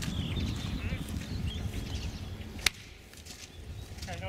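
Wind rumbling on the microphone in open country, with faint, distant, wavering animal calls. A single sharp click comes about two-thirds of the way through, and after it the rumble drops to a quieter level.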